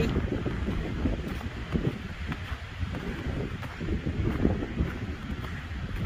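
Wind buffeting the microphone: a steady low rumble and rush that rises and falls slightly in gusts.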